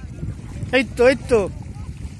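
A voice calls out three short shouts in quick succession about a second in, over a steady low rumble of wind on the microphone.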